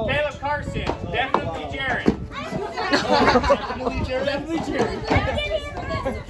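A group of children and adults chattering and calling out over one another, several high-pitched voices overlapping.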